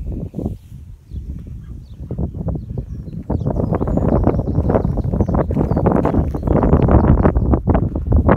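Footsteps on dry, stony dirt close to the microphone, a rapid irregular run of steps that gets louder about three seconds in.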